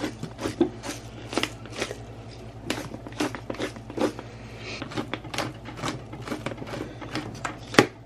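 Pepper mill grinding black peppercorns: a run of irregular crunching clicks, over a faint steady low hum.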